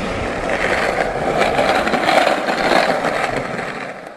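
Skateboard wheels rolling on a paved path, a steady rolling noise that swells a little midway and fades out at the end.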